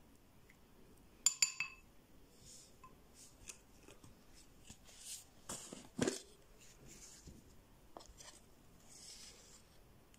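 Quiet kitchen-ware handling: a tomato half squeezed over a ceramic bowl and a small plastic spoon working in it, with one sharp ringing clink of dishware about a second in and scattered soft taps and rubs after.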